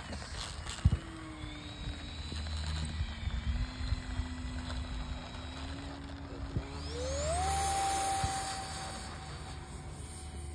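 Electric motor of an RC model jet whining. About seven seconds in it rises sharply in pitch as it is throttled up for the takeoff roll, holds high, then eases off near the end. A sharp thump about a second in is the loudest moment, over a low steady rumble.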